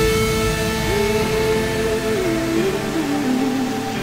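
Electronic drum and bass music in a break: held synth chords and a slow melody line, with the heavy beat dropped out.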